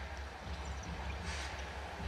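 A basketball being dribbled on a hardwood court, heard as faint knocks over a steady low hum of the arena.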